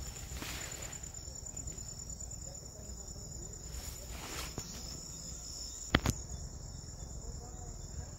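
Insects in the grass singing one steady, high-pitched trill without a break, with a single sharp click about six seconds in.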